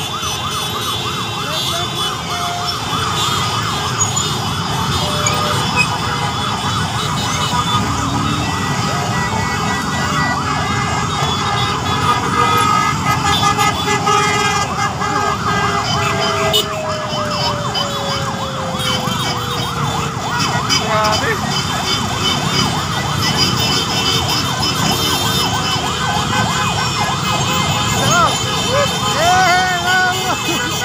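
Many sirens yelping and wailing at once, overlapping, over the running of a packed crowd of motorcycles. In the middle, one long tone falls slowly in pitch.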